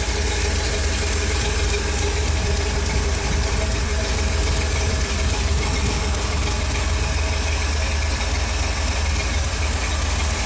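A 350 cu in Chevrolet small-block V8 with a 282 cam idling steadily, heard with the hood open.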